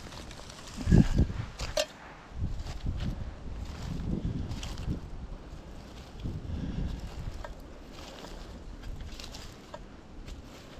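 Footsteps through dry leaf litter while walking uphill, with irregular low rumbling thumps from the body-worn camera rubbing on a jacket and wind on the microphone. The loudest thump comes about a second in.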